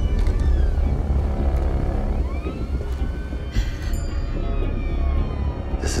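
Film trailer score: a deep steady bass drone under gliding, sweeping tones that rise and fall in pitch, with a short sharp hit about three and a half seconds in.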